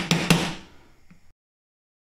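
A small metal tool knocking a hot silver coin flat on a wooden board on a kitchen table: a couple of quick, sharp knocks in the first half second, which ring on briefly and fade. The sound then cuts off completely.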